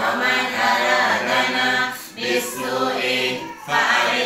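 Voices chanting an Arabic prayer together in long, drawn-out melodic phrases, with short breaks about two seconds in and again near the end.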